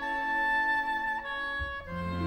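Broadway pit orchestra of woodwinds, brass and strings playing held chords in the song's instrumental close, with no singing. The chord shifts about a second in and again near the end.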